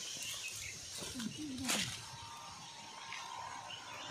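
Faint outdoor background with a short, distant pitched call or voice about a second in, followed by a brief sharp click; a faint steady hum sets in about halfway through.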